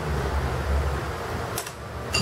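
Steady low room hum, with a couple of light clicks about one and a half seconds in.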